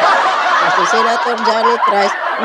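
A woman's breathy, snickering laugh close to the microphone, mostly air with short voiced bits.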